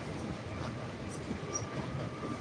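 Low, steady background noise of a crowded courtroom in a pause between speech, with a faint steady tone.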